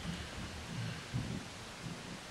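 A pause in speech: quiet room noise with a few faint, soft low rumbles.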